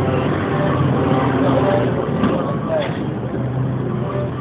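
Busy street ambience: several people talking at once over steady traffic noise.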